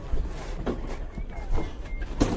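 Outdoor background of distant, indistinct voices over a steady low rumble, with a faint thin wavering tone now and then.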